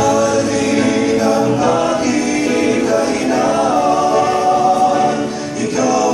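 Male vocal quartet of baritones singing a Tagalog gospel song together through handheld microphones, several voices in harmony, with a brief break for breath before the next phrase near the end.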